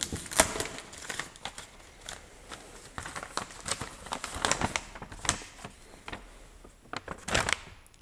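A plastic packing-slip pouch on a cardboard parcel being torn open and a folded paper delivery note pulled out and unfolded: irregular crinkling and rustling of plastic and paper.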